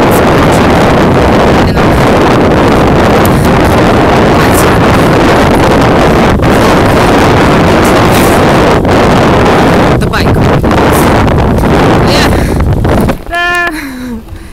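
Loud, steady wind rushing over the microphone of a hand-held camera while cycling. It cuts off suddenly about a second before the end, and a short voice follows.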